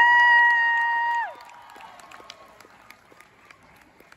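A high voice holds one long drawn-out call for over a second, gliding down as it ends, followed by faint scattered applause and crowd noise.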